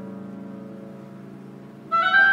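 Piano chord held and slowly fading, then an oboe comes in on a high note near the end.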